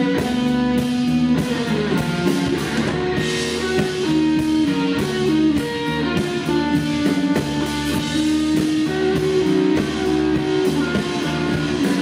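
Live rock band playing an instrumental passage: a Telecaster-style electric guitar holding ringing notes over bass guitar and a drum kit, with no vocals.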